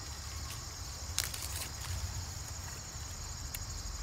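Crickets chirping steadily in a continuous high chorus, over a low rumble, with a few faint clicks about a second in.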